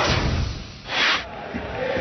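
TV sports broadcast transition sound effect: a loud hit that fades away, then a short swish about a second in, with stadium crowd noise underneath.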